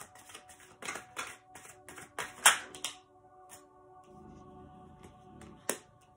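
A tarot deck being shuffled by hand: a quick run of soft card slaps, about three a second, for the first three seconds, the loudest about halfway through. Then a single sharp snap near the end as a card is laid on the table, over quiet background music.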